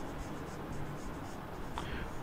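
Felt-tip marker writing on a whiteboard: a faint series of short scratchy strokes, a few each second.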